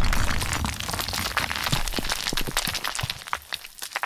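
Logo-animation sound effect of stone shattering: dense crackling and crumbling of debris, loudest at the start and thinning out into scattered cracks toward the end.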